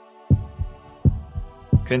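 Heartbeat sound effect: low double thumps, about one beat every 0.7 seconds. It plays over soft, sustained background music.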